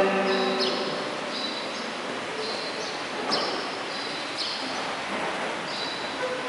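Small birds chirping: short, high, slightly falling chirps repeat every half second to a second over steady background noise. A man's chanted voice trails off just at the start.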